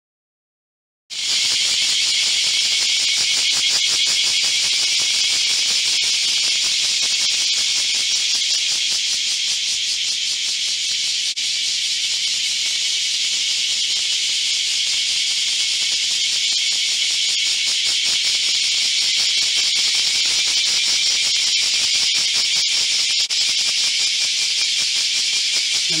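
Cicadas buzzing in a loud, steady, high-pitched drone that starts abruptly about a second in.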